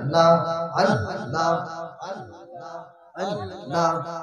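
A man chanting a sermon in a sung, melodic style into a microphone, holding wavering notes through long phrases, with a brief break about three seconds in.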